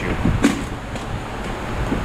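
Plastic cover of a Robinair A/C recovery machine being worked onto its housing, with one sharp knock about half a second in and fainter bumps after, as it is pushed into alignment.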